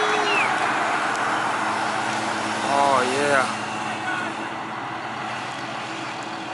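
A pack of road bikes passing close with a steady rushing whirr, and a spectator's shout about three seconds in. The steady hum of a street sweeper truck's engine comes in behind the riders.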